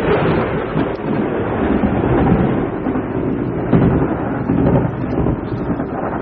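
Storm sound effect: thunder over a steady rushing noise of wind and rain, with slow swells in loudness. It is a hurricane-themed drop, played to send a caller off the radio show.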